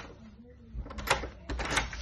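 Multipoint door lock and lever handle being worked, giving two clusters of sharp metallic clicks and clacks, about a second in and again towards the end.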